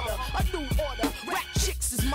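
Hip hop music: a rapper's verse over a beat with a deep bass line and drum hits.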